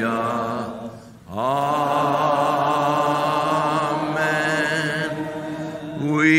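Church congregation singing a slow worship chorus in long drawn-out notes: a phrase ends, there is a short breath about a second in, then the voices slide up into one long held note.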